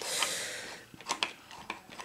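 A short breathy exhale, then a few light clicks and taps of small tools or a stamping plate being handled on a table.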